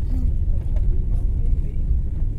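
Steady low rumble of a car driving, heard inside the cabin: engine and road noise.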